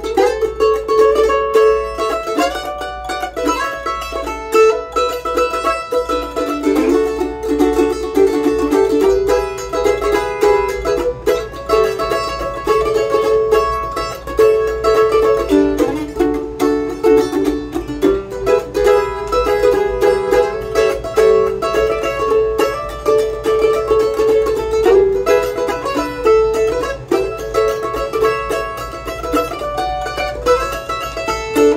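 F-style mandolin strung with Mapes Octacore 11–40 strings, played solo: an unbroken melody of picked notes. The strings are about a week old, which the player takes for their sweet spot.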